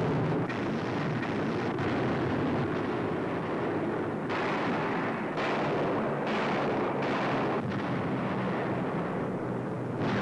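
Bomb explosions on an old newsreel soundtrack: a continuous rumble of blasts, with several louder bursts standing out about four to eight seconds in.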